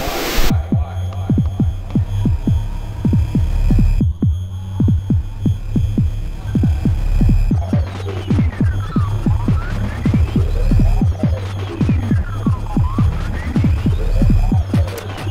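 Electronic music: a heavy, steady bass drone under rapid repeated pitch-drop hits, about three a second. About halfway in, higher sweeps that fall and then rise join in, repeating every few seconds.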